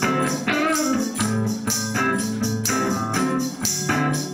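Instrumental break of a country-rock song: an electric guitar played through an amplifier, with hand percussion keeping a steady beat.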